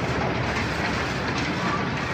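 Loud, steady mechanical noise with no clear rhythm and a few faint ticks.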